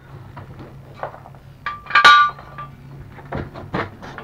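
Metal clinks and knocks of hands-on work with tools and steel parts on a mobility scooter, with one loud ringing metallic clank about two seconds in, over a low steady hum.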